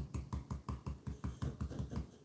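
Stencil brush pouncing paint through a stencil onto a wooden board: a quick, even run of dull taps, about six to seven a second, that stops near the end.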